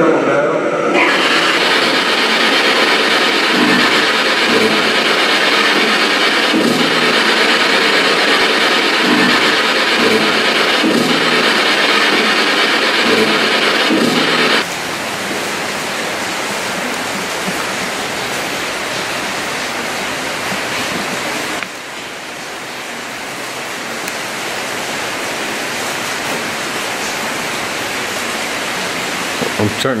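Loud steady static hiss. A louder stretch with faint pulses cuts off abruptly about halfway through, and a quieter, even hiss carries on after it.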